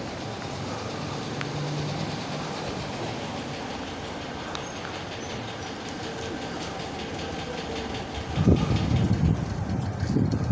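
Steady rumble of vehicles close by, then wind buffeting the phone's microphone in loud low gusts from about eight and a half seconds in.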